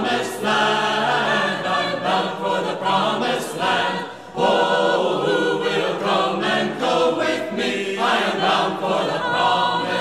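A choir singing, many voices together in sustained phrases, with a brief break just past four seconds in.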